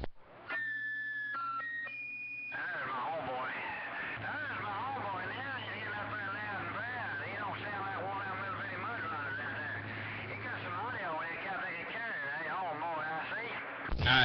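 Another station's transmission heard through the speaker of a Cobra 2000 CB base station: a quick run of four electronic beep tones stepping in pitch, then a voice coming over the channel, with a steady low hum under much of it.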